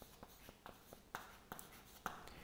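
Chalk writing on a chalkboard: a series of faint, short taps and scrapes as the chalk strokes out letters.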